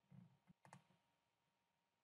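Near silence with faint computer mouse clicks in the first second: a couple of quick clicks, the clearest about three quarters of a second in.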